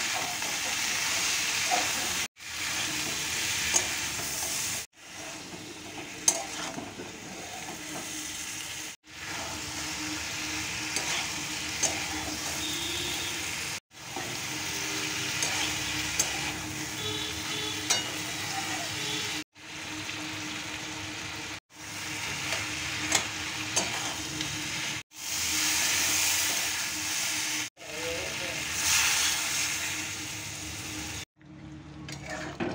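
Spiced mixed vegetables sizzling in oil in a steel kadai, stirred with a metal spatula that clicks and scrapes against the pan. The sound breaks off abruptly every few seconds and starts again.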